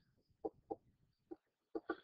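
A few faint, short clicks scattered through an otherwise quiet pause.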